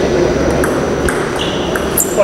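Table tennis rally: the ball clicking sharply off the rackets and the table, several knocks roughly half a second apart.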